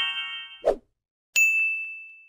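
Subscribe-animation sound effects: a chime rings on and fades, a brief soft pop comes about two-thirds of a second in, then a click and a single bright bell ding that rings and dies away.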